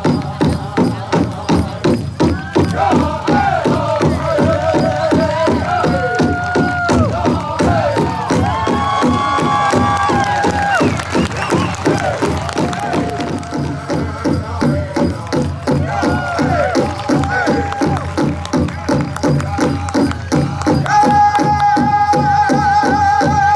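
Drum group accompanying a hoop dance: a steady, fast drumbeat with voices singing a chant in gliding phrases over it, and a shout of "Go!" a few seconds in.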